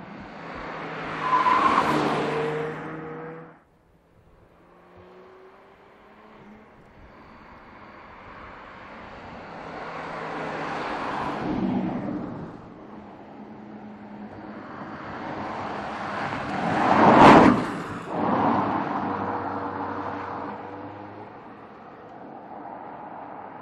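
A 2018 Porsche Panamera 4 E-Hybrid Sport Turismo with a 2.9-litre twin-turbo V6 drives past three times, its engine note and tyre noise rising to each pass and falling away. The first pass cuts off suddenly just before 4 s in, and the third, about 17 s in, is the closest and loudest.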